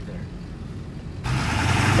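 Low rumble of a moving vehicle heard from inside the cab, then, a little over a second in, an abrupt switch to the louder, steady low note of the lifted Ford Excursion's 7.3 Power Stroke diesel V8 idling close by, with a hiss over it.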